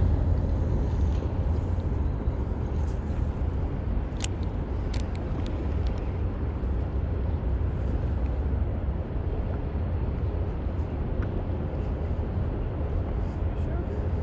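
Steady low outdoor rumble with a few light clicks about four to five seconds in.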